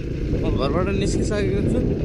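Dirt bike's engine running steadily on the move, with wind rumble on the microphone. A voice speaks in short bursts over it.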